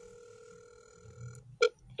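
Telephone ringback tone over a phone's speaker as a call rings through: a steady tone that stops about a second and a half in, then a short louder beep near the end.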